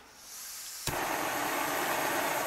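Small backpacking canister stove burner fed from a one-pound propane cylinder through an adapter. Gas hisses from the opened valve, there is a sharp pop just under a second in as it is lit with a hand lighter, then the steady rush of the burning flame.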